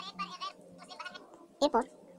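Speech only: a quieter voice with a wavering pitch from the video playing on the phone, then the narrator's voice near the end.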